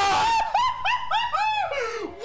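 A man's high-pitched excited screaming: a loud shriek, then a quick run of rising-and-falling yelps, about five a second, that fades near the end.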